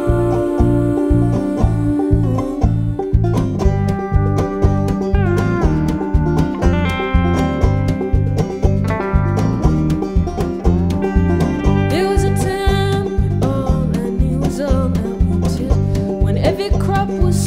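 Instrumental passage of a live folk song: a banjo picked over a steady low beat. Some notes slide in pitch around the middle and again near the end.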